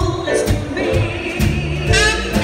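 Female vocalist singing live with a small jazz band behind her: bass notes and drum strikes under the voice, with the phrase ending in a long wavering held note in the second half.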